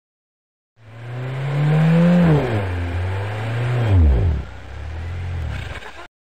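A car engine revving, starting about a second in: the revs rise, drop back, then fall steeply near four seconds before it settles into a steady low run and cuts off suddenly.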